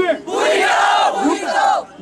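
A crowd of protesters shouting a slogan back in unison, one long collective shout that answers a leader's call in a call-and-response chant.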